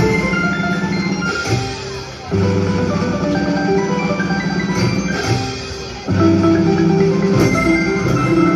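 Platinum Spins three-reel slot machine playing its chiming electronic spin tune over a steady low tone while the reels spin. The tune pauses briefly and starts again with each new spin, about two seconds in and again about six seconds in.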